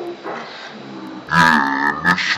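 A man's voice making a long, deep, drawn-out vocal sound, quiet at first and then loud from a little past halfway.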